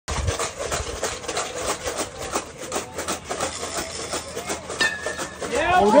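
Spectators chattering, then about five seconds in a metal bat strikes the ball with a short ringing ping: a home run. It is followed at once by spectators cheering and shouting "Let's go!".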